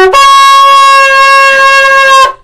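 Long curved shofar being blown in one loud sustained blast. Right at the start the note breaks briefly and jumps up to a higher pitch, which is then held steady.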